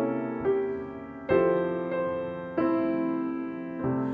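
Piano playing slow jazz chords, each struck and left to ring, over a low C held in the bass as a pedal tone.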